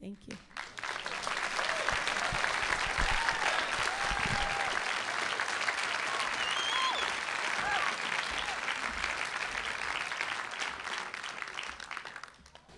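Theatre audience applauding a singer at the end of her song. The clapping starts suddenly, holds steady, and fades near the end.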